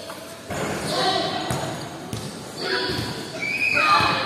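Players shouting and calling out, the loudest sound, with a basketball bouncing on the court now and then. Everything echoes in a large covered hall.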